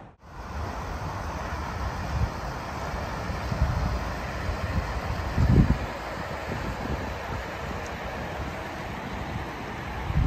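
Wind buffeting the microphone in uneven low gusts, the strongest about five and a half seconds in, over a steady outdoor hiss.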